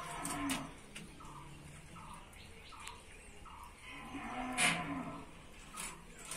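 A cow mooing in the background: one long low call at the start and another about four seconds in. Sharp knocks from the fish being worked against the blade come in between.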